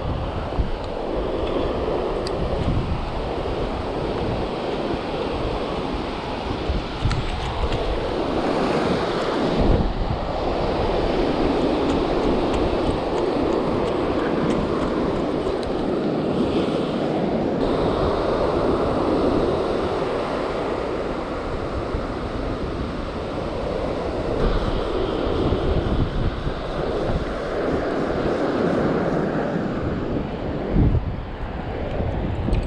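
Ocean surf breaking and washing up a sandy beach, swelling and easing in long surges, with wind buffeting the microphone.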